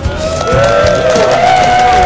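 Music playing over a wedding crowd cheering and clapping, with several rising-and-falling voices overlapping.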